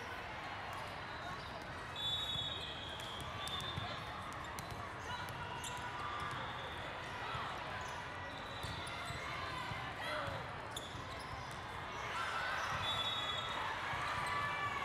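Hall ambience at a multi-court volleyball tournament: a steady babble of many voices, with volleyballs being hit and bouncing on the courts. A few short high-pitched tones come through, about two seconds in and again near the end.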